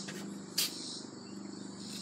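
Steady high-pitched chorus of crickets and other insects, with a single sharp knock about half a second in.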